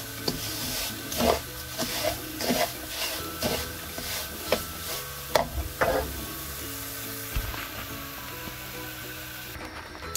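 Black spatula scraping and stirring semolina as it roasts in oil in a nonstick pan, about two strokes a second over a light sizzle; the strokes thin out near the end. The semolina is being slowly browned on low heat to golden brown.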